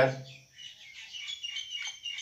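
Birds chirping faintly in the background, heard plainly once a spoken phrase ends about half a second in.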